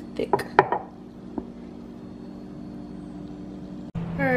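A glass mason jar knocking and clinking against a granite countertop several times in the first second, with one more knock a little later, over a steady background hum.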